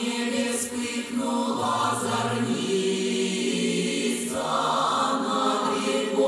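A Russian folk song sung by a vocal ensemble into microphones, several voices holding long notes in harmony. The upper voices swell louder a little after four seconds in.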